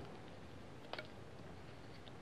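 Rotary PEX tube cutter being turned around blue PEX tubing to cut it: mostly faint, with one short, sharp double click about halfway through.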